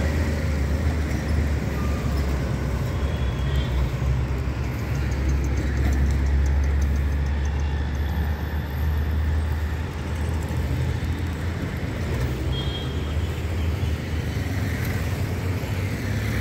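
Steady low rumble of a vehicle moving through city traffic: engine and road noise, heaviest in the bass, running evenly.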